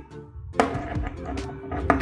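Background music, with two sharp clicks of hard plastic about half a second in and near the end as a translucent energy-blast accessory is pressed onto a plastic action figure.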